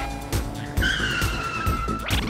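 Tyre-screech sound effect: a held squeal that starts about a second in and slides slightly down in pitch, over background music with a steady beat.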